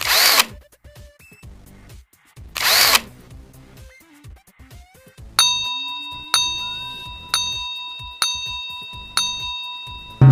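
Two whoosh sound effects, one at the start and one about two and a half seconds in, then five ringing countdown-timer chimes about a second apart, each struck sharply and fading away.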